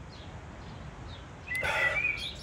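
A man drinking mulberry compote from a glass mug, with a short, loud slurp at the rim about one and a half seconds in. Birds chirp faintly in the background.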